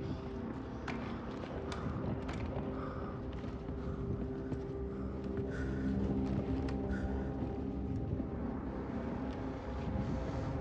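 Tense film soundtrack: a steady low drone of held tones, with scattered sharp clicks and taps in the first few seconds.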